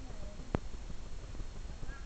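A single sharp click about half a second in, over a steady low rumble of background noise.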